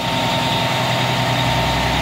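Heavy diesel truck engine running steadily, powering a grapple truck's hydraulic boom, with a thin steady whine over the low hum.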